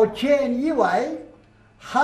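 An elderly man's voice reading a sentence aloud in Mandarin Chinese. He breaks off for a short pause and goes on again near the end.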